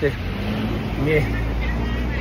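A road vehicle's engine running in street traffic, a steady low rumble with an even drone, and a brief voice sound about a second in.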